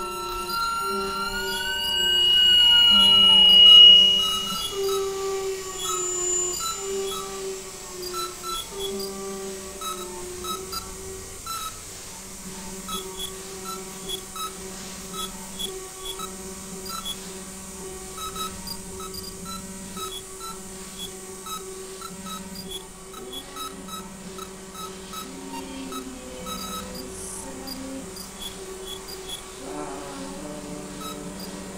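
Electronic synthesizer music: steady low drone tones under a repeating pattern of short blips. In the first few seconds, wavering, gliding high tones swell to the loudest point about four seconds in, then cut off.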